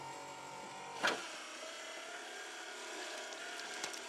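A homemade automatic can-opening machine's small electric motor whirring faintly with a wavering whine, and a sharp clack about a second in.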